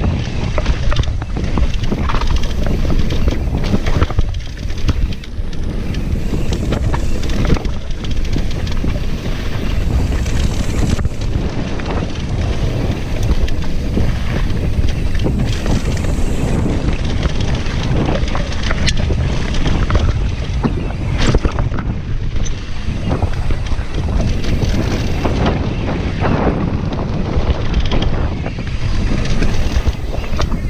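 Wind buffeting the microphone and tyre rumble from a Jamis Defcon 1 enduro mountain bike riding a rough dirt trail, with frequent clattering knocks as the bike hits bumps.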